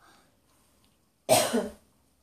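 A person coughing once, a short loud cough a little past halfway.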